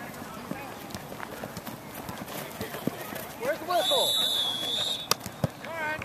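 Scattered shouts and calls from players and spectators, with a long high steady tone lasting about a second just past the middle and two sharp knocks near the end.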